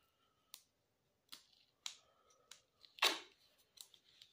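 Short clicks and rustles of handling as a roll of duct tape is picked up and handled, about six in all, the loudest about three seconds in.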